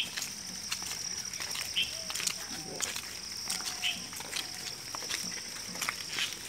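Footsteps of a group walking on a sandy path, with scattered crunches and faint distant voices, over a steady high-pitched drone.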